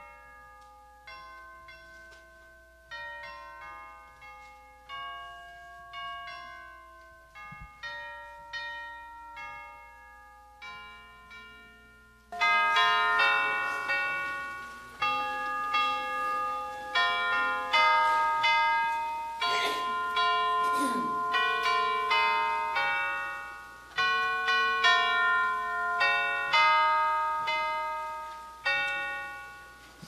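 Piano played solo: struck notes and chords that ring and die away. It is soft for about the first twelve seconds, then turns suddenly louder and fuller, and stops near the end.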